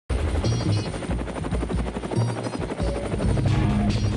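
Helicopter rotor chop, a fast even pulsing, with music playing over it.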